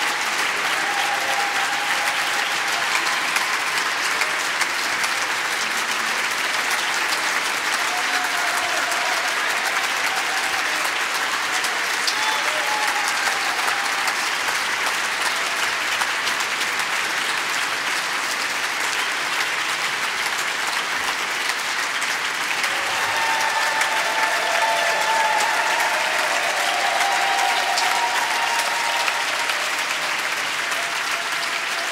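Audience applause, steady sustained clapping that swells a little about three-quarters of the way through, with a few faint voices calling out over it.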